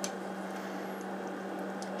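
Room tone: a steady low hum over faint hiss.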